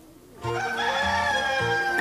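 A rooster crowing once, a long held call that starts about half a second in, over soft background music.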